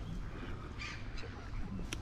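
Waterbirds on a river calling a few times briefly, about a second in, over a steady outdoor background.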